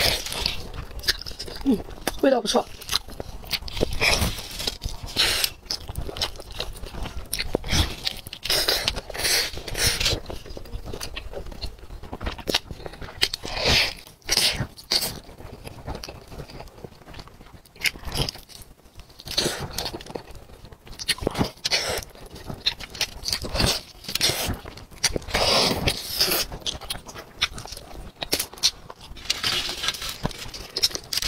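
Close-miked eating of a whole roast chicken: meat being bitten, pulled off the bone and chewed, with many short wet mouth clicks throughout.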